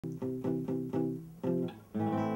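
Acoustic classical-style guitar being fingerpicked: a run of plucked notes, about four a second, each ringing briefly before the next.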